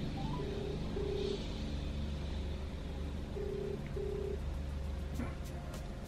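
Telephone ringback tone heard through a phone's loudspeaker: a low double ring, twice, about three seconds apart, while an outgoing call rings and has not yet been answered.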